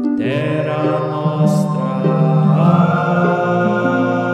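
A song in which a chant-like sung voice holds long notes over a steady instrumental backing, moving to a new held note about two and a half seconds in.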